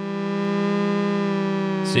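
Sampled Korg MS-20 oscillators in an Ableton Live instrument rack holding one sustained synth note rich in overtones. The note swells slowly in level while oscillator one's detune is being turned.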